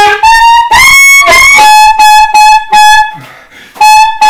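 Solo saxophone improvising jazz phrases in a small room. It plays short, separated notes, with a run of the same note repeated several times in the middle, then a brief pause before a few more notes near the end.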